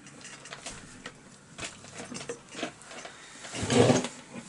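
Scattered light clicks and taps of a chainsaw's cylinder and housing parts being handled and seated by hand, with a louder clunk near the end as the saw body is turned over on the workbench.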